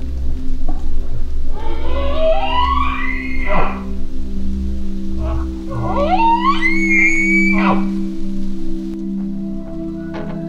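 Bull elk bugling twice, about a second and a half in and again about six seconds in: each call is a rising whistle that climbs in steps to a high pitch and then breaks off. Background music with a steady low drone runs underneath.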